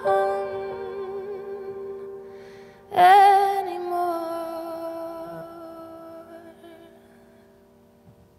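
Grand piano and a woman's voice closing a song: a held note fading, then a new piano chord with a sung note about three seconds in, left to ring out and die away slowly.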